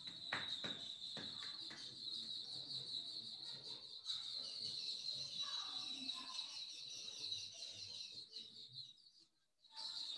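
Quiet, steady high-pitched insect trilling that fades out about eight and a half seconds in, with a few soft clicks near the start and a short call about five and a half seconds in.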